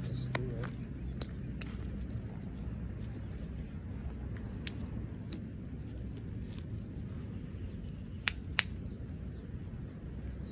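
Steady low outdoor rumble with scattered sharp taps and clicks; the two loudest come close together about eight seconds in.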